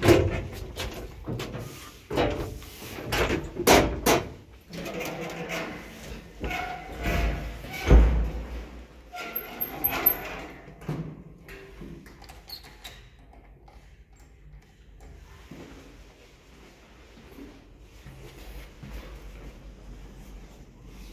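Elevator doors of an old IFMA T46 traction lift being pushed open and swung shut: a bang at the start, several knocks and clatters over the next few seconds, and a heavy thump about eight seconds in. Quieter after about twelve seconds.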